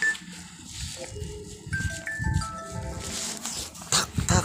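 A short melody of clear electronic chime notes, each held briefly and stepping up and down in pitch, beginning about a second in, over a low rumble.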